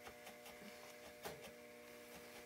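Near silence: a steady faint room hum, with a few faint, irregular soft ticks of a single felting needle stabbing into wool.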